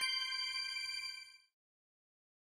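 The highest note of a rising three-note chime strikes right at the start. It rings on with the two earlier notes and fades away after about a second and a half.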